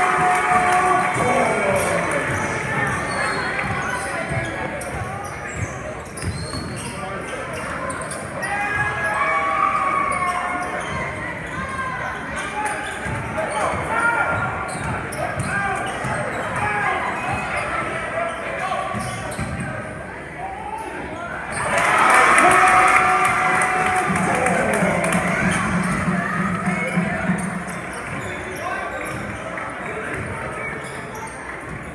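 Basketball game in a gymnasium: a ball bouncing on the hardwood under the voices of players and spectators echoing in the hall. The shouting surges louder about two-thirds of the way through, followed by a low steady tone lasting about three seconds.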